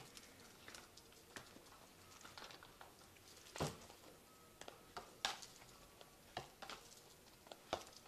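Faint, scattered soft clicks and rustles of tarot cards being handled and laid down on a cloth-covered table.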